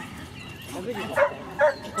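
Small dog giving a few short, sharp yaps about a second in.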